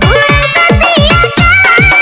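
Fast electronic dance music from a DJ mix: a kick drum about four beats a second under a melody that slides in pitch, with one high note held through the second half.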